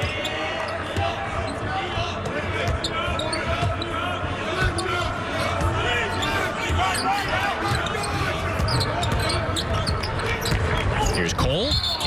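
Basketball being dribbled on a hardwood court, with repeated sharp bounces, while players' voices call out on the court. There is no crowd noise.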